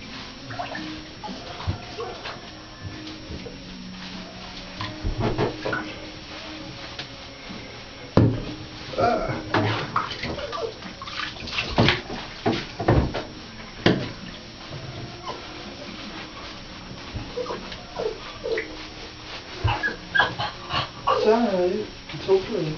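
Water splashing and sloshing in a bathtub as a wet chow chow puppy is washed by hand, with a run of sharp splashes and knocks in the middle.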